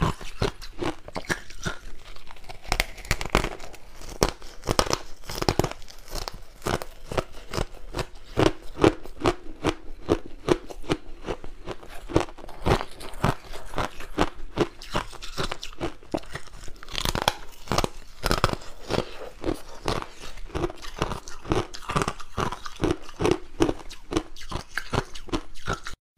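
Crushed white ice being chewed, close to a clip-on microphone: a dense, irregular run of crisp crunches that goes on without a break.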